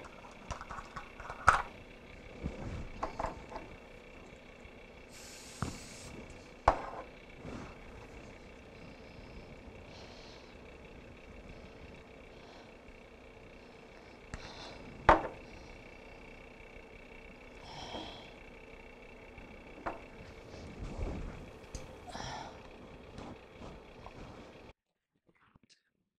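Quiet kitchen handling: a few scattered sharp clinks and knocks of a glass jar, plastic measuring cup and utensils being handled over a skillet, the loudest about 15 seconds in, over a faint steady hum.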